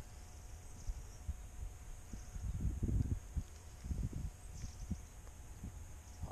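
Low rumbling and soft, irregular thumps from wind and handling on a hand-held camera's microphone while the man moves about, with faint high chirping in the background.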